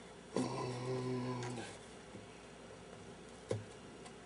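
A man's low closed-mouth "mmm" held at one pitch for about a second, then a single light click near the end.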